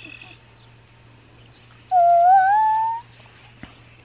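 A kitten mewing: one loud, drawn-out mew about two seconds in, lasting about a second and rising slightly in pitch.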